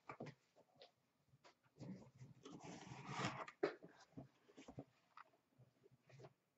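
Cardboard gift-box lid being lifted off and handled: light scattered knocks and clicks, with a soft rustling scrape about two to three seconds in.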